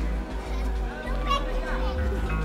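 DJ music played loud over an outdoor PA, with a deep steady bass and held tones. High-pitched voices call out over it about a second in and again near the end.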